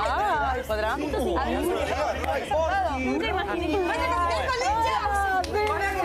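A group of people chattering, several voices talking over one another, with a steady low hum underneath.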